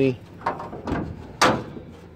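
Several sharp metal clunks from the steel hood of a 1967 Chevy C10 being lifted and let down onto its latch, the loudest about a second and a half in.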